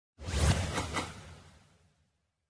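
Logo-reveal whoosh sound effect with a deep rumble underneath. It starts suddenly just after the opening, carries three quick hits in its first second, then fades away.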